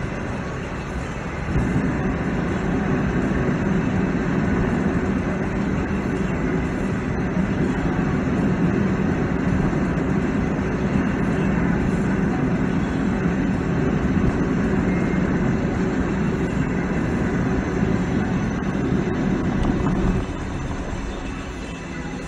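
Cabin noise of a Hyundai i20 driving on a wet road: a steady rumble of tyres and engine. It gets louder about a second and a half in and drops back about two seconds before the end.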